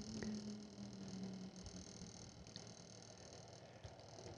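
Near silence: faint room tone with a low steady hum that fades out within the first two seconds, and a few very faint clicks.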